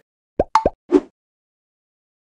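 Four quick cartoon-style pop sound effects from an animated title card, packed into under a second, each with a short rising pitch sweep, the last one lower and the loudest.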